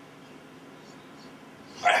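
Quiet room tone with a low steady hum, then a man's voice starting to speak near the end.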